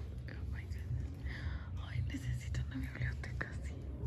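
Faint whispered, murmured voices of people nearby, over a steady low rumble.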